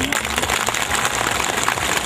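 Audience applauding: dense, even clapping from many hands.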